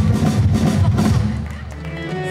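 Band members and crew clapping, mixed with drum and percussion hits, in answer to a call for a big round of applause. It thins out about one and a half seconds in, leaving a low steady hum.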